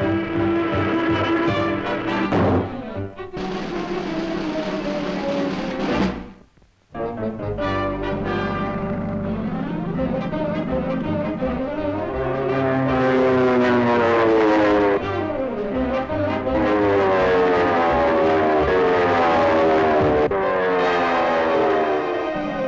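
Orchestral cartoon score playing loud chase music with brass and timpani. Many pitches slide up and down together. The music drops out briefly about six and a half seconds in, then comes back.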